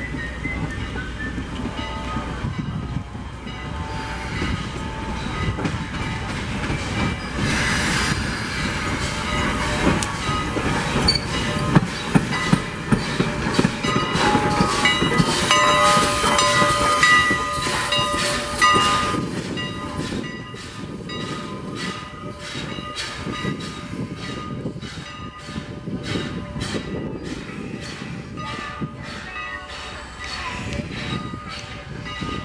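Strasburg Rail Road No. 89 steam locomotive moving slowly past close by as it goes to couple onto the coaches: hissing steam and some wheel squeal. In the second half it gives evenly spaced beats, about two to three a second.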